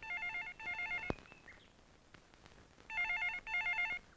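Telephone ringing with a warbling electronic trill in double rings: ring-ring at the start, then ring-ring again about three seconds in.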